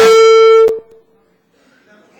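A loud, steady pitched tone with overtones, held for under a second and cut off suddenly with a click. Afterwards there is only a faint murmur from the audience.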